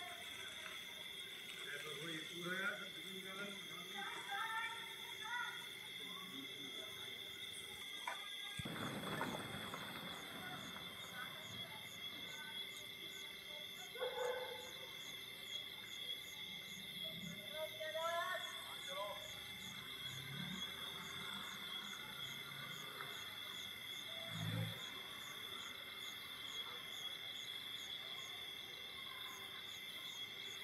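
A steady chorus of crickets and other insects, with a regular ticking pulse joining in partway through. Faint voices can be heard, and there is a brief rustle about eight seconds in.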